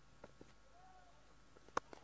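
Cricket bat striking the ball: one sharp crack near the end over near silence, with a couple of faint ticks before it.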